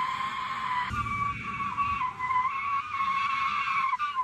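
A parking boot clamped on an SUV's rear wheel screeches and scrapes as the car drives off with it still locked on. The screech is one steady high tone that wavers slightly.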